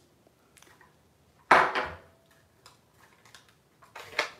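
Hard plastic stamping tools handled on a craft desk: one sharp knock about a second and a half in, with a few faint clicks and rustles around it.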